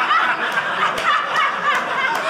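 A studio audience laughing together at a punchline: many voices overlapping in a sustained, fairly loud wave of laughter.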